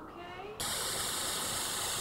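Loud burst of electronic static hiss that starts suddenly about half a second in and holds steady: the interference noise of a surveillance camera feed breaking up.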